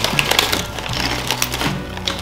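Crunching of crisp lentil and chickpea papadum chips being bitten and chewed: a rapid, irregular run of sharp cracks, over soft background music.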